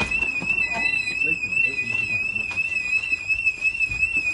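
An electronic alarm sounding a continuous, loud, high-pitched tone that warbles slightly several times a second.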